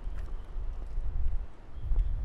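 Low, uneven rumble of wind buffeting and handling noise on a stick-mounted handheld recorder carried at a walk, swelling near the end.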